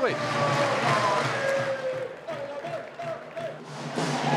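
Football stadium crowd: a general hubbub of many voices with a few shouts, louder for about the first two seconds and then dying down.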